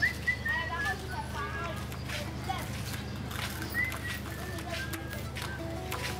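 Outdoor street ambience: distant voices and short high chirps over a steady low hum, with scattered light clicks.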